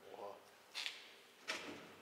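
A single sharp click or knock about a second and a half in, against quiet room tone.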